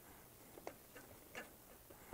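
Near silence with three or four faint light clicks, small wooden pieces being handled against the wooden rack.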